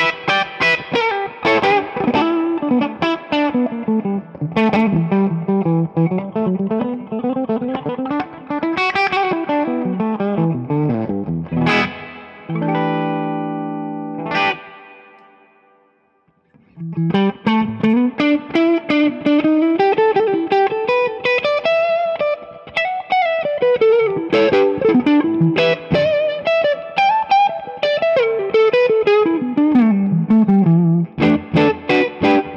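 Josh Williams Mockingbird semi-hollow electric guitar played through an amp with an LPD Pedals boost on, giving a lightly driven tone. It plays fast single-note runs that climb and fall, then a held chord about halfway through that rings out and fades to a brief silence, then more fast runs.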